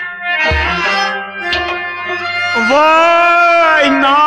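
Kashmiri Sufi folk ensemble music, with harmonium and bowed-string tones held under two hand-drum strokes. A loud, long melodic note slides up into place about two and a half seconds in and is held to the end.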